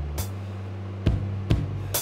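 Background music at a scene transition: a sustained bass line with a few sharp drum hits.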